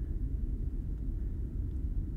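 Steady low rumbling drone with no clear pitch or rhythm: the audio drama's background ambience bed, standing in for the hum of a space station.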